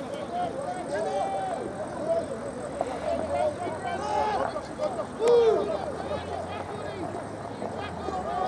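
Distant shouts and calls from rugby league players across an open field, going on throughout. A faint, low, steady hum joins in about three seconds in.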